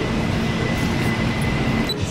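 City street traffic noise: a steady rumble with a low steady hum and a thin high whine over it.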